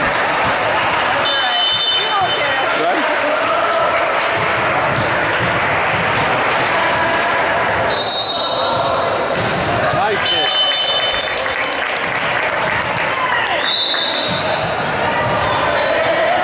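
Echoing voices and chatter in a gymnasium during a volleyball game, with the ball being hit and bouncing on the hardwood court. Several high squeaks of about a second each, typical of sneakers on the gym floor, come four times.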